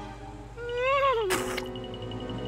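Cartoon soundtrack: a pitched, voice-like tone that swells upward and falls away, cut off by a short burst of noise, then held music tones.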